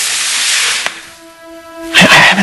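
A breathy hiss for about the first second, then a soft sustained note of background score swelling in.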